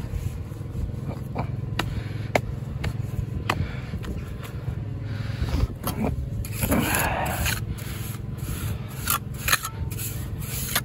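Cotswold stone pieces knocking sharply as they are set on a mortar bed, with a steel trowel scraping through wet mortar about seven seconds in. A steady low rumble runs underneath.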